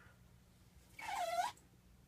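A short squeak about a second in, dipping then rising in pitch, from rubbing down a freshly applied sticker on the keyboard's glossy surface.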